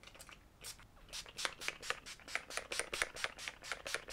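Setting-spray pump bottle misting in a quick run of short spritzes, about five a second, starting about a second in.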